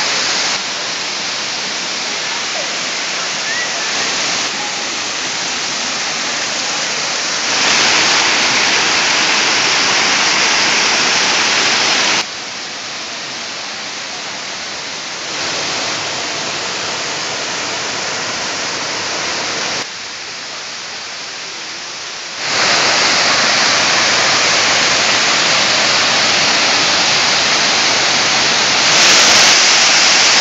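Rushing water of the Kuang Si Falls cascades pouring over rock into pools: a steady, unbroken wash of falling water that changes level abruptly several times, louder in some stretches and softer in others.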